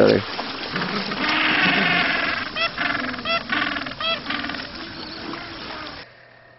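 Gentoo penguins calling in a colony: a raspy run of calls about a second in, then three short calls in quick succession near the middle, over a steady background of the rookery. The sound cuts off at the end.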